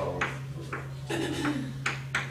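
Chalk tapping and scraping on a blackboard as numbers and a fraction are written, a few sharp taps, over a steady low hum.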